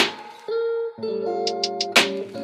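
Background music: held pitched notes with a sharp hit at the start and another at the end, and three quick ticks just before the second hit.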